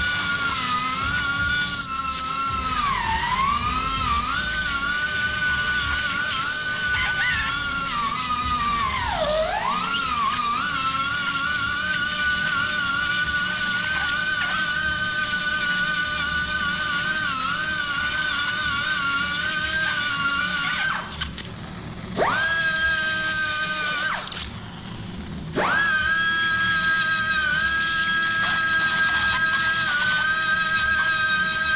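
Small high-speed surgical burr whining as it grinds the cartilage off the carpal joint surfaces, its pitch dipping as it bites into bone. It stops twice, briefly, near the end and spins straight back up to speed.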